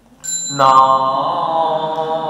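One strike on a small hand-held temple chime (yinqing), its thin high ring carrying on. About half a second in, a man's voice starts a sustained chant and becomes the loudest sound.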